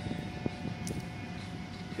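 Steady low background rumble with a faint constant hum, and a single light click about half a second in.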